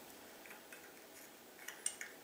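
Faint, sparse clicks of a broken metal light-bulb base shifting in a ceiling-fan light socket as gloved fingers press and twist it. The sharpest click comes near the end.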